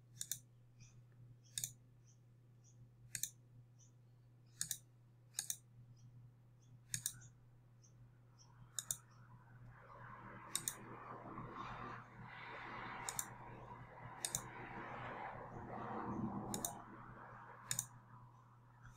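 Computer mouse button clicks, about a dozen sharp single clicks spaced a second or two apart, as accounts are picked from an on-screen dropdown list. A soft rustling noise rises in the middle and fades just before the end, under a faint steady hum.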